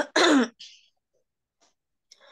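A woman briefly clearing her throat, in two short bursts about half a second long.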